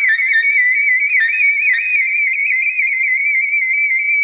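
Solo soprano saxophone improvising in its high register: a continuous line of rapid, warbling small-interval figures circling around one high pitch, with no break for breath.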